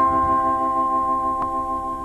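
Electronic pre-announcement chime of a Berlin tram's passenger-information system: a quick run of bell-like notes that ring on together and slowly fade, the sign that a stop announcement follows.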